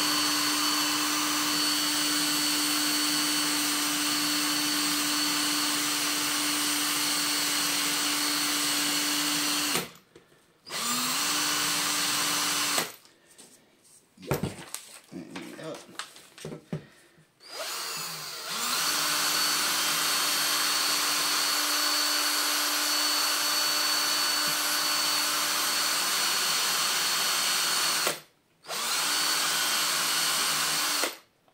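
Cordless drill running at steady speed, spinning a brass plane adjustment wheel on a dowel against a cloth dabbed with Brasso to polish it. The drill stops briefly about ten seconds in, is off for several seconds with a few handling clicks, then runs again, with one short stop near the end.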